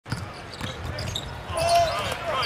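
Basketball dribbled on a hardwood court, bouncing about every half second, with short high chirps between the bounces. A voice comes in near the end.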